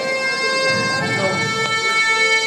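Instrumental backing music playing a passage of long held notes that change pitch a couple of times, with no singing over it.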